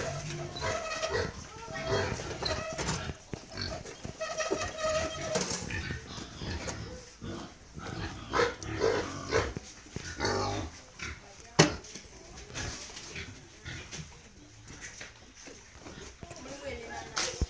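Domestic pigs calling with repeated, drawn-out pitched squeals in the first few seconds, then scattered calls, with voices in the background. A single sharp knock sounds near the middle and is the loudest sound.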